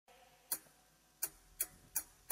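Four short, sharp clock-like ticks from an edited intro sound effect, coming closer together toward the end, with near silence between them.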